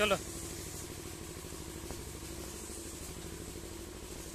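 A steady low mechanical hum with one constant tone, like a running motor, under a single short spoken word at the start.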